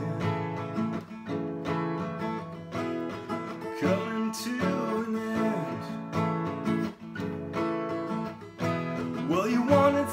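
Steel-string acoustic guitar strummed in a steady rhythm of ringing chords.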